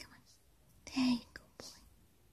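A person whispering softly: one short whispered phrase about a second in, followed by a shorter breathy whisper.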